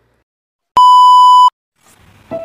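A single loud electronic beep: one steady high tone, like a censor bleep, lasting about three-quarters of a second and starting about three-quarters of a second in.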